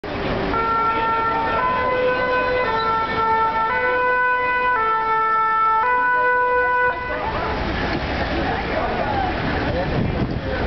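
French fire engine's two-tone "pin-pon" siren, alternating between two pitches about once a second. It cuts off about seven seconds in, leaving street traffic noise.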